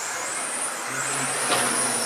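Electric 1/10 touring cars with 17.5-turn brushless motors racing on a carpet track: a high-pitched motor whine that climbs early on and then holds steady at speed, over the steady noise of the running cars. A sharp click about one and a half seconds in.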